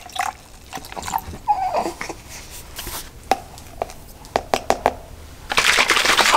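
Plastic shaker bottle being handled: a few small clicks and knocks, then, about five and a half seconds in, the bottle being shaken with the milk sloshing inside. A brief falling squeak sounds about a second and a half in.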